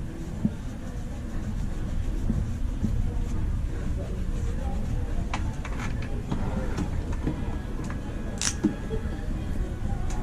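Steady low room rumble with faint background music, a few light clicks, and one short hiss about eight and a half seconds in.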